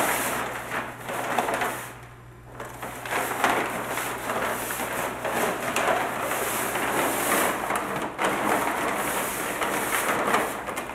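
Brown kraft paper being gathered and folded by hand on a hard floor, giving a continuous crinkling rustle that pauses briefly about two seconds in, over a faint steady low hum.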